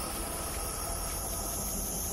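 A steady hiss with a low hum beneath it and faint high steady tones: an ambient background drone, with no distinct events.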